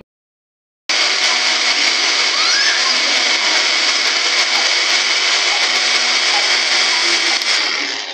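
Electric kitchen mixer grinder starting about a second in and running steadily, falling away near the end.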